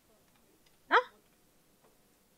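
Speech only: one short spoken word, a questioning "no?", rising in pitch about a second in.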